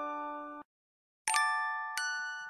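Bell-like lullaby music: held ringing notes stop suddenly into a short dead silence, then a new chord of bright struck bell tones comes in and rings down.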